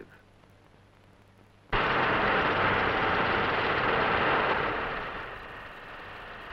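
Shipyard work noise that starts suddenly after nearly two seconds of near silence: a loud, dense din of metalworking that fades away near the end.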